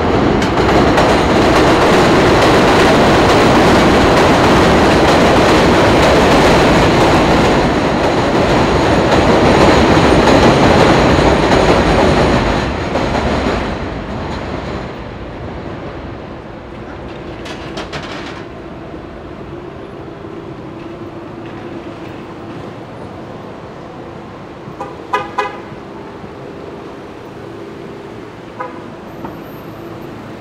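Elevated subway train running on the steel el structure overhead: a loud rumble with faint squealing for about the first dozen seconds, fading away by about fifteen seconds. Quieter street traffic follows, with a vehicle horn honking twice briefly near the end.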